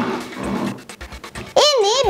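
A child's voice starts about one and a half seconds in, its pitch swooping up and down, over background music. Before it come a few short, soft clicks.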